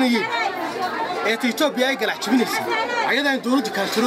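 Speech only: a man talking without pause.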